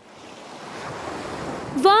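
A cartoon whoosh sound effect: a rushing noise that swells steadily louder for nearly two seconds. A voice exclaims "wow" near the end.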